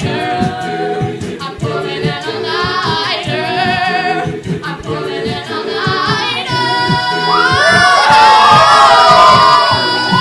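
A cappella vocal group singing several parts over a pulsing low vocal line, swelling into a loud held chord with vibrato in the last few seconds.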